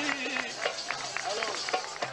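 A man's sung line of Lebanese zajal poetry ends about half a second in. It is followed by scattered, irregular sharp claps and faint voices from the hall.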